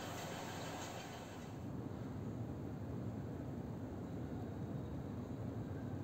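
A faint, steady, low rumble of outdoor background noise with no distinct events. It turns slightly louder and fuller from about two seconds in.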